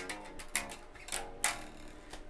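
Electric bass, a 1970s Columbus Jazz Bass copy, played fingerstyle: a short phrase of about four plucked notes, each ringing on briefly.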